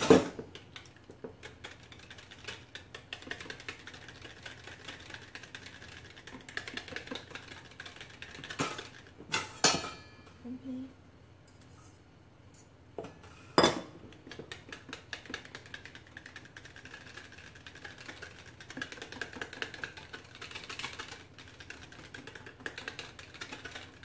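Wire whisk beating egg yolks into a warm cream cheese batter in a bowl: a fast run of light clicks of the whisk against the bowl, broken by a few louder knocks and clinks, the sharpest at the very start.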